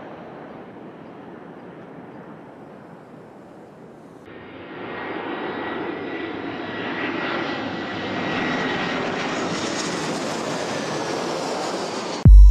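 Airplane engine noise: a steady rushing hum that swells about four seconds in, with a faint high whine slowly falling in pitch.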